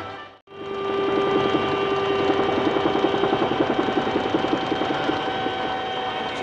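Helicopter in flight heard from the cockpit, its rotor giving a fast, even chop over a steady whine. The chop fades out about five seconds in.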